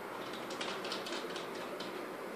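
Light scratchy clicks and rustling of hands fitting a small screw into a telescope's altazimuth mount, a quick run of them from about half a second in until near the end, over a steady faint hiss.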